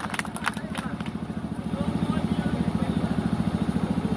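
An engine idling steadily nearby, a rapid even beat in the low range, with a few sharp clicks in the first second.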